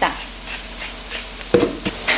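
Wooden pepper mill being twisted to grind pepper, a light rapid crunching rasp, followed by a short knock about one and a half seconds in.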